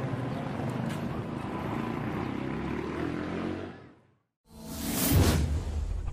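Outdoor street noise with a low vehicle engine hum, fading out just before four seconds in. After a brief silence, a loud whoosh sound effect with a low boom opens the end-title music.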